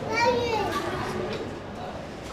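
High-pitched children's voices in the background, wavering without clear words and fading out after about a second.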